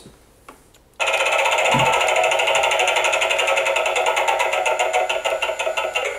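A Gemmy Animated Mystic Wheel Halloween decoration switches on about a second in with a sudden, steady, rapid buzzing rattle as its wheel spins, with one brief low thump just after the start.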